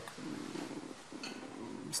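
A man's quiet, low, drawn-out hesitation hum lasting most of two seconds: a filled pause while he searches for the next words.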